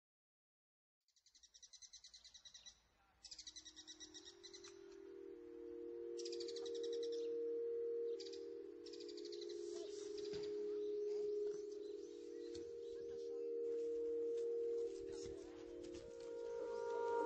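Intro soundtrack: birdsong in short, rapid chirping trills, joined about five seconds in by sustained, overlapping held musical notes. The sound starts soft and grows louder.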